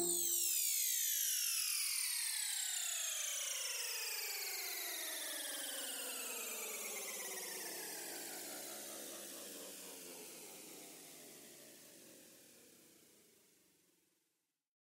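Electronic dance track's closing sweep: a cluster of synthesized tones sliding slowly down in pitch together after the beat stops, fading out about ten seconds in.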